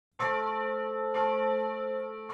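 A church bell struck twice, about a second apart, each stroke ringing on with long steady overtones.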